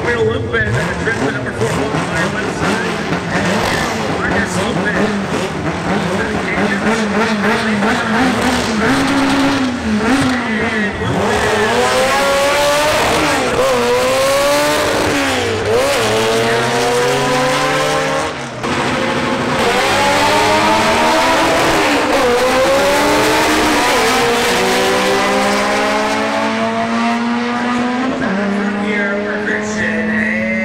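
Honda Civic drag car's engine revving at the start line, then accelerating hard down the strip. Its pitch climbs and drops back at each upshift, several times over.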